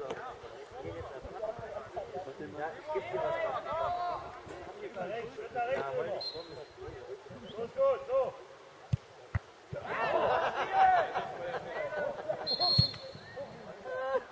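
Players and spectators calling out on a football pitch during a free kick, with a short blast of a referee's whistle about six seconds in and another near the end. There are a couple of sharp thuds just past the middle, followed by a burst of louder shouting.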